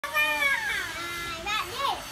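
Young children's high voices calling out, in drawn-out calls that slide down in pitch.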